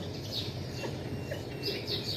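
Small birds chirping in the background: a few short, high, falling chirps and brief thin whistles.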